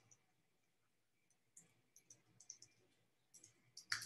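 Faint computer keyboard keystrokes over near silence: a scattered handful of light clicks, mostly in the second half.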